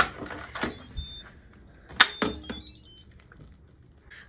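Instant Pot electric pressure cooker lid being turned and unlocked: a click at the start, a soft thump about a second in, and a sharper click about two seconds in, each followed by brief high metallic ringing.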